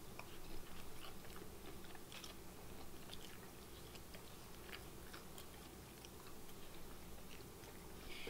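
Faint chewing of fried shrimp, with small irregular clicks of the food being bitten and chewed over a steady low room hum.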